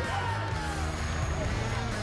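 Background music with a steady bass line under the broadcast.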